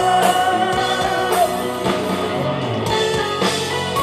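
Live rock band playing: electric guitar over drums and keyboards. A long held note ends about a second and a half in, leaving the guitar and a steady drum beat of about two hits a second.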